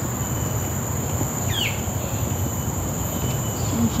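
Steady high-pitched buzzing drone of insects in the trees, with a single bird call, a quick downward-sliding whistle, about a second and a half in, over a low rumble.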